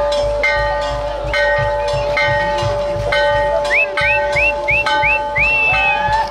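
Festival band music with a regular low beat, a long held note, and chiming notes struck about once a second. A little past the middle come six short rising whistles in quick succession.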